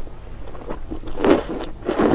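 A person slurping wide flat noodles out of a spicy broth. A short slurp comes a little over a second in and another starts near the end, with small wet mouth clicks between them.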